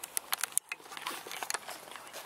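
Handling noise from a handheld camera being swung about: a quick run of sharp clicks and knocks in the first half-second, a brief drop-out, then fainter scattered ticks.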